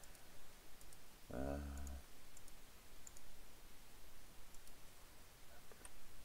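A few sparse, faint clicks of a computer mouse, with a man saying a drawn-out 'uh' about a second in.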